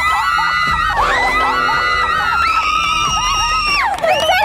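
Several young women screaming in excitement, long high-pitched overlapping screams held for a second or more each, as a winning shot lands in the centre of the target.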